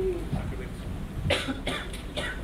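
A man coughing, a short run of three or four quick coughs starting a little over a second in.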